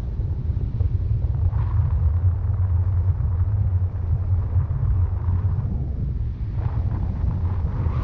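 Wind rumbling on a camera microphone held out on a stick in paraglider flight, a steady low rumble.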